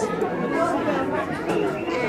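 Indistinct speech and chatter of voices, with no other distinct sound standing out.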